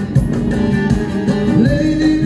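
Live band music through the stage PA: keyboard and other instruments accompanying a male singer.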